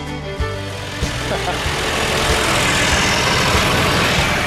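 Country-style background music fades out about a second in and gives way to a John Deere tractor engine running loudly, its noise building over the next couple of seconds.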